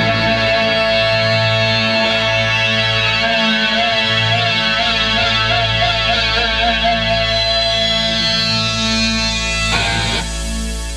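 Rock band music with guitar, holding one sustained chord, with a final stroke near the end.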